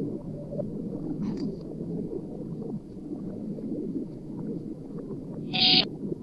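Reversed, chopped-up audio fragments from a necrophonic ITC sound bank, playing as a dense, jumbled low sound, with a short hissy burst about a second in and a louder one near the end.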